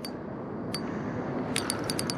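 Spinning reel being cranked against a hooked fish over a steady hiss, with light metallic clicks: one about a second in and a quick run of them near the end.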